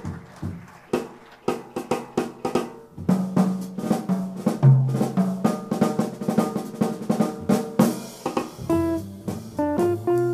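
Jazz drum kit playing a solo intro of snare, bass drum and rimshots in a steady swing rhythm. About eight and a half seconds in, the guitar, piano and double bass come in with the tune.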